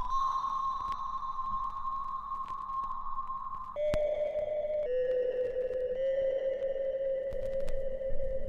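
Intro jingle of sustained synthesized tones: a steady high note that steps down to a lower held note about four seconds in, with a brief click at the change.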